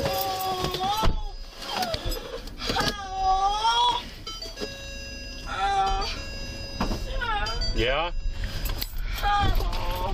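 A woman moaning and wailing in long, wavering "oh" cries, five of them a couple of seconds apart, one sliding down steeply in pitch near the end, heard inside a patrol car's cabin over the low hum of the running car.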